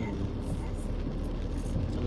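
Steady low road and engine rumble inside the cabin of a Tata Punch driving on a rain-wet road.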